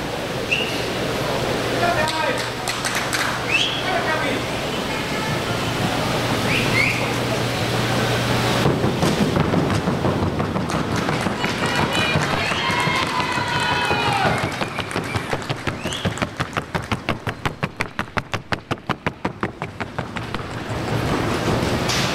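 Hooves of a paso fino mare in the trocha colombiana gait striking the board track, a fast, very even run of sharp beats about four to five a second in the second half. Before that, crowd voices and chatter.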